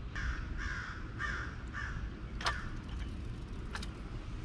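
A bird calling: four short calls about half a second apart in the first two seconds, followed later by two sharp clicks.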